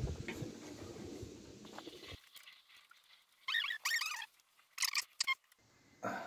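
Cartridge bottom bracket being threaded by hand into a steel frame's bottom-bracket shell, then turned with a splined installation tool. A low handling rustle comes first, then after a pause a few short squeaks and sharp clicks in the second half.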